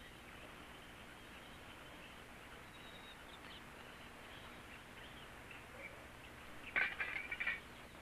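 Faint bird calls over the steady hiss of an old film soundtrack, with a louder, brief cluster of sharp calls about seven seconds in.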